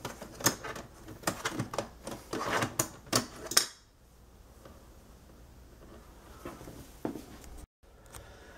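Irregular run of plastic clicks and knocks from an HP laptop's DVD drive being worked at in its side bay; the drive is stuck and may have been broken in the effort. The clicking stops about three and a half seconds in, leaving a few faint taps.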